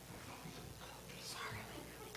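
Faint, indistinct voices, with a soft whispered burst about a second in.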